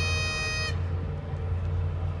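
Bagpipes holding a final note that cuts off under a second in, the pitch sagging slightly as it dies away, over a steady low rumble.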